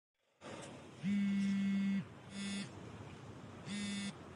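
Smartphone vibrating with an incoming call: a buzz of about a second, then two short buzzes.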